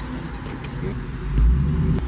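Car cabin noise while riding: a steady deep road rumble that swells louder about one and a half seconds in.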